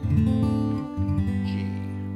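Steel-string acoustic guitar in open G tuning, strummed: a D7 chord at the start, then about a second in the open strings (a G chord) are struck and left ringing, slowly fading.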